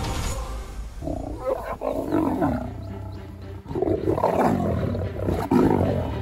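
A lioness giving two loud, harsh calls, the first about a second in and the second from about the middle to near the end, over faint background music.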